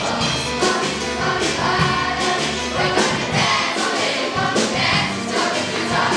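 A group of children singing together in chorus over a musical accompaniment.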